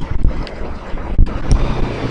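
Low rumbling noise on a microphone.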